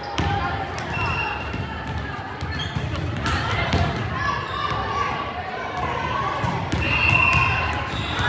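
Volleyball rally in a reverberant gymnasium: sharp hand-on-ball contacts and thuds come repeatedly through a mix of voices calling out.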